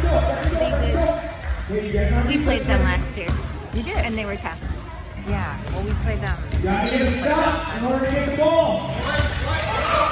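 A basketball dribbled on a hardwood gym floor, with sneakers squeaking and indistinct voices of players and spectators, all echoing in a large gym.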